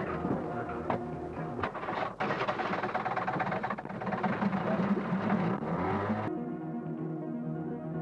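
Live sound from a Super 8 film's sound track: noisy outdoor ambience with scattered knocks and clicks. About six seconds in it cuts off suddenly, and the film's other track takes over with music of steady held tones, muffled with no highs.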